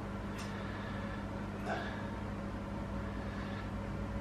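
Steady low hum of a running appliance, with a couple of faint light ticks, one about half a second in and one nearly two seconds in.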